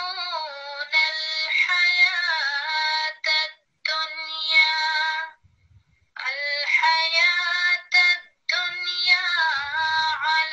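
Recorded female voice reciting the Quran in a melodic chanted tarteel style, played back from a recording, in phrases with short pauses. The recitation has a break for breath in the middle of a word, a fault in tarteel.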